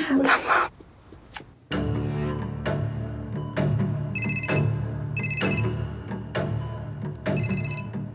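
Background drama music, a steady low drone with soft strikes about once a second, over which a mobile phone rings in three short electronic bursts in the second half.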